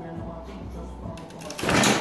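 A prototype truss bridge giving way under a stack of books. A loud, noisy crash begins about one and a half seconds in and lasts under half a second as the load tips and falls.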